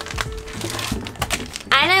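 Plastic packet of atta flour crinkling as it is handled and lifted out of a cardboard box, with background music underneath.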